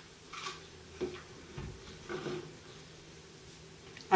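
Faint handling sounds from a rifle being set down on its folding bipod on a table: a few light knocks and rustles in the first half, one with a low thump, then little more.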